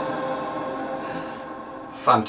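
A held keyboard chord, played through a vintage NAD transistor amplifier and bookshelf speakers, dying away slowly after the keys are released.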